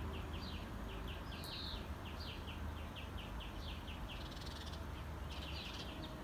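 A small bird chirping in a long series of short high chirps, about three to four a second, with a short pause near the end, over a steady low background rumble.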